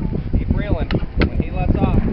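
People's voices, too indistinct for words, over a constant low wind rumble on the microphone, with a few sharp clicks.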